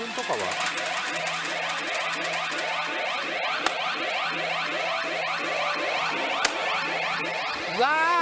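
Pachinko machine (CR Great Sea Story 4) playing an electronic effect sound while its reels spin: a fast run of short rising chirps, about three or four a second, over a low steady hum that drops in and out.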